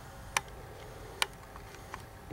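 Two sharp, brief clicks a little under a second apart, with a fainter one near the end, over faint room hiss.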